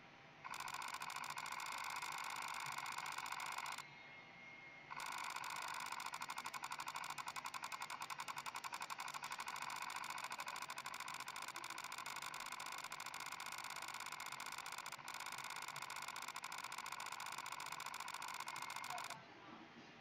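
Planmeca Emerald intraoral scanner system giving a steady electronic tone of several pitches while it captures the scan. It breaks off for about a second a few seconds in and stops abruptly near the end, when scanning stops.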